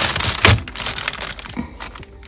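Plastic zip-top bags crinkling as they are handled, with a loud crackle about half a second in, then lighter rustles that fade out.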